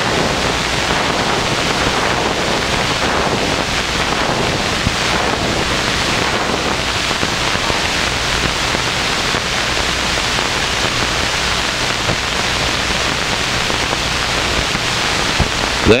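Steady loud hiss with a faint low hum underneath, rising over the first second and then holding level: the surface noise of an old film soundtrack.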